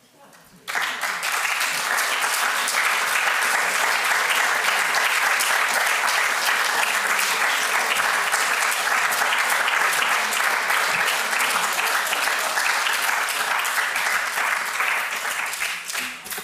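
Audience applauding. The clapping breaks out suddenly under a second in, holds steady, and dies away near the end.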